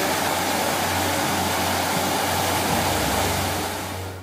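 Steady splashing of a fountain's water jets falling into its stone basin, fading out near the end.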